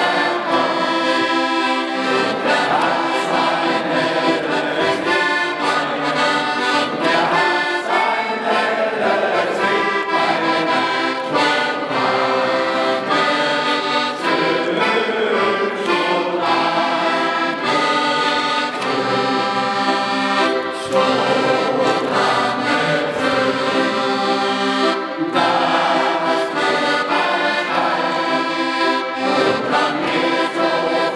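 Accordion playing a traditional tune, with sustained chords and a moving melody without a break.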